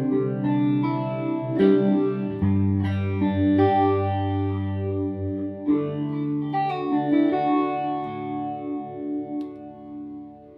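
Hofner Galaxie electric guitar played through the clean channel of a Line 6 Spider Valve amp with effects pedals in the chain: a run of chords, each struck and left to ring, changing every second or two.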